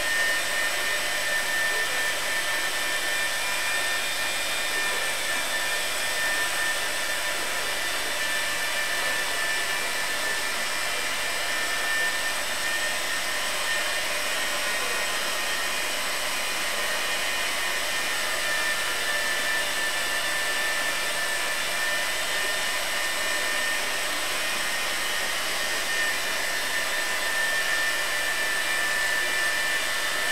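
High-speed grinder running steadily with a high-pitched whine over a hiss, setting up to grind the jaws of a three-jaw chuck on a rotary table.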